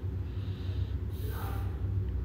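Steady low rumble, with one short, sharp breath through the nose a little past halfway.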